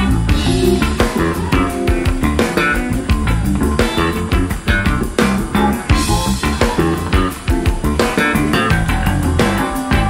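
Live funk band playing an instrumental groove: electric guitar, bass guitar and drum kit over a steady beat.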